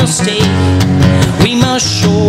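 Live acoustic guitar music: an acoustic guitar strummed steadily in a solo song performance.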